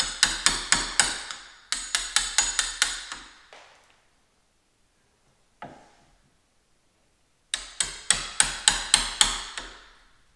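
Wooden-handled hammer tapping a Kobalt wood chisel, chopping out the latch mortise in a pocket door's edge. Three runs of quick, sharp taps about five a second, with two single taps in the pause between the second and third runs.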